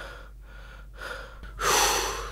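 A person's loud breathy gasp or huff, once, about one and a half seconds in, after a quiet moment.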